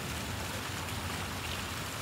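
Fountain water splashing and running steadily.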